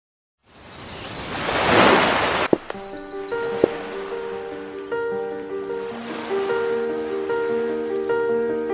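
Soundtrack music: a rising whoosh of noise that swells and cuts off suddenly about two and a half seconds in, then a gentle melody of held notes, with a couple of sharp clicks as it begins.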